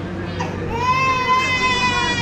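A small child in a pushchair crying loudly: one long, held wail that begins just under a second in.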